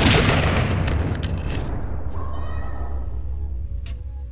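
A trailer's cinematic impact hit: one sudden loud boom with a long rumbling, reverberant tail that slowly fades. About two seconds in, thin high pitched tones come in faintly over the tail.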